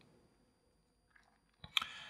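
A quiet pause with faint mouth noises: a soft click and a small smack of the lips near the end, as a man draws breath to speak.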